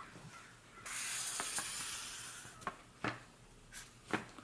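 A felt-tip marker drawing on a brown paper bag: a scratchy stroke lasting about a second and a half, followed by a few light clicks of the pen and paper.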